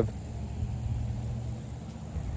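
A low, steady rumble and hum with no distinct events.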